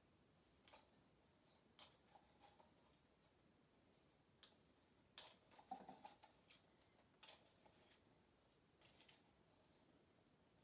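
Near silence with faint, scattered clicks and scrapes of a stir stick against small plastic cups as paint is scraped and poured from one cup into another, the busiest stretch about halfway through.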